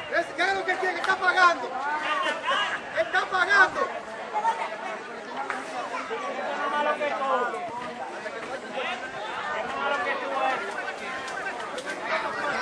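Several people chattering and calling out at once, the overlapping voices too jumbled for any words to come through.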